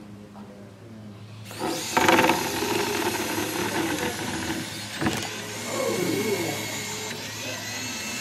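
Small electric gear motors of two mini sumo robots running at full power as the robots drive and push against each other, starting suddenly about a second and a half in. A sharp knock comes about five seconds in.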